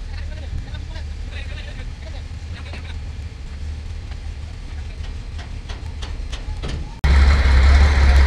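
A steady low engine rumble with faint scattered clicks. About seven seconds in it cuts off abruptly to a much louder, closer engine rumble.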